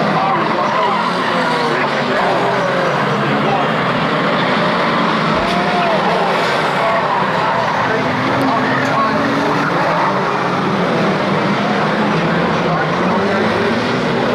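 A pack of saloon stock car engines racing together, their pitch rising and falling as drivers rev on and off the throttle round the oval.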